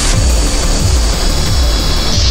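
Industrial techno track: a steady kick drum beat, about three beats a second, under a dense layer of harsh, roaring noise.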